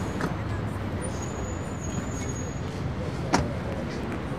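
Steady road-traffic rumble, with a single sharp knock a little over three seconds in.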